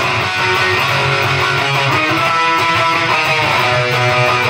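Punk rock song in an instrumental stretch: an electric guitar strummed steadily and loud, after a last sung phrase right at the start.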